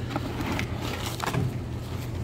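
Steady low background hum with a few faint, brief rustles and clicks.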